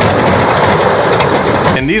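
De Havilland DHC-2 Beaver's Pratt & Whitney R-985 nine-cylinder radial engine running loudly, with a rapid popping beat. It ends abruptly near the end, where a man begins to speak.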